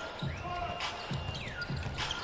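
A basketball dribbled on a hardwood court, about two bounces a second, over steady arena noise, with a thin high tone that rises, holds and then falls.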